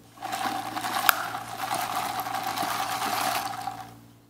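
Iced coffee being sucked up through a plastic straw: one continuous slurping sound of liquid and air, lasting about three and a half seconds, with a single sharp click about a second in.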